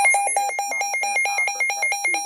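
Midland WR120B weather radio sounding its alert test tone: a loud, rapid repeating electronic beep, about five or six beeps a second.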